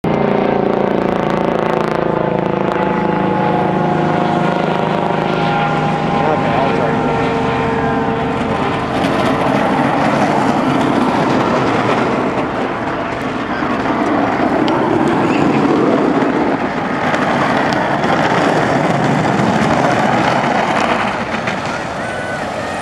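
Crowd of spectators yelling and cheering without a break along a buggy race course. The sound is loud throughout and fullest from about nine seconds in.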